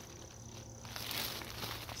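Soft rustle of loose potting soil being handled and dropped into a plastic nursery pot, loudest about a second in, with a few light clicks. A steady high-pitched tone runs underneath.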